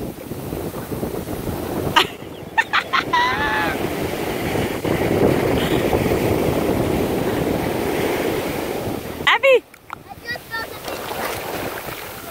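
Ocean surf washing up the shore and over wet sand: a steady rush that swells in the middle and drops away sharply near the end, with wind buffeting the microphone.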